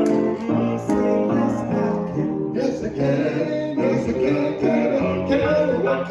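Two men singing a gospel song into microphones, with instrumental accompaniment underneath.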